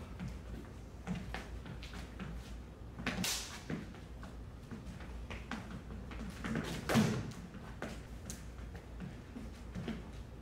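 LED lightsaber blades striking each other during a sparring bout: light knocks throughout, with two louder hits about four seconds apart, over a steady low hum of the hall.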